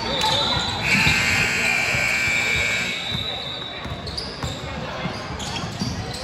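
A basketball being dribbled on a hardwood gym floor during play, with voices in the hall. About a second in, a loud steady high-pitched tone sounds for about two seconds.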